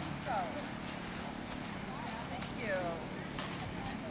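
Indistinct background chatter of people talking, with a couple of short voice-like falling calls standing out.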